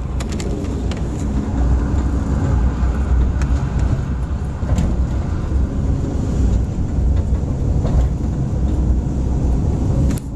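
Steady low rumble of a moving car's road and engine noise, with a few faint clicks.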